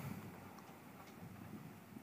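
Faint room tone: a low, even background hiss with no distinct sound.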